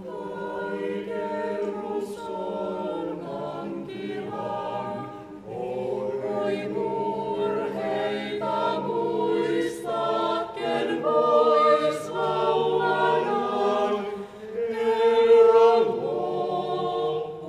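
Small choir singing a traditional Finnish Christmas carol a cappella in several-part harmony, in phrases with short breathing breaks, swelling loudest near the end.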